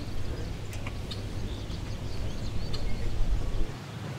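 Outdoor ambience: a steady low rumble of breeze on the microphone, with a few faint bird chirps now and then.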